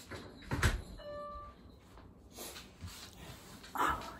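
A dog whining once, briefly, with a few soft knocks of movement around it.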